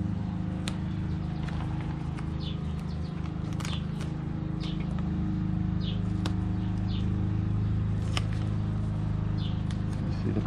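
A steady low mechanical hum, like a motor or engine running, is the loudest sound throughout. Short high chirps from a bird come every second or so, with a few sharp clicks.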